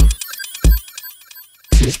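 Electronic dance music: two kick-drum hits, then the bass drops out about a second in and leaves quick, stepped electronic beeps like a telephone ringtone. The kick comes back near the end.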